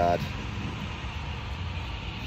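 A steady low engine hum, like a car idling close by, over a faint wash of outdoor noise.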